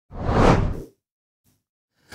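A single whoosh transition sound effect for a news bulletin's segment change, swelling up and fading out within about a second.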